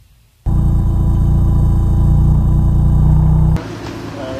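A loud, low, sustained gong-like sound effect. It hits suddenly about half a second in, holds steady at one pitch and cuts off abruptly near the end.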